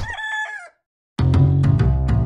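A brief pitched sound effect with a sharp start, under a second long, like a crowing call. After a short gap, intro music begins about a second in, with a deep bass line and sharp regular strikes.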